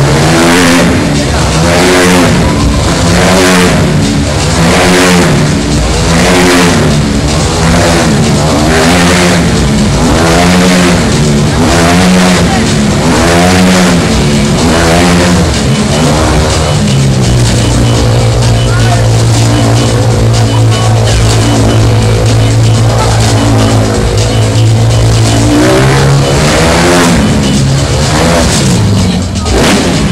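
A motorcycle engine running hard inside a steel mesh globe of death, its revs rising and falling about once a second as it circles the sphere. Partway through it holds a steady pitch for several seconds, then revs rise and fall again and drop off near the end.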